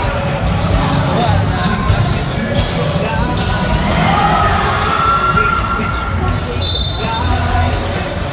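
Basketball being dribbled on a hardwood court during a game, with spectators' voices in a large, echoing gym.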